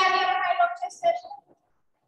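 A person's voice speaking for about a second and a half, then silence.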